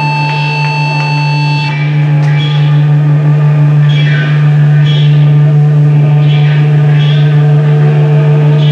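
Metal band playing live with loud amplified guitar and bass holding one low droning note. A steady high feedback-like tone cuts off a little under two seconds in, and from then on there are cymbal crashes about every half second over the held drone.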